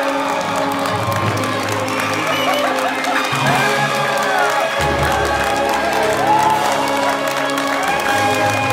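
Film score music playing over a theatre audience clapping and cheering, with the music's bass notes changing a few times.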